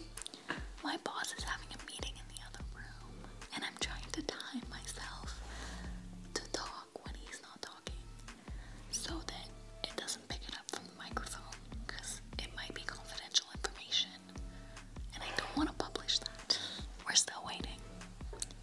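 A woman whispering quietly in short, broken fragments.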